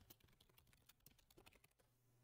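Faint computer keyboard typing: a quick run of light key clicks.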